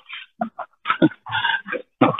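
A person talking in short phrases, the voice thin and muffled with no high end.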